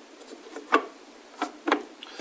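Three light ticks as a steel rule is handled against the planed wooden cabinet side.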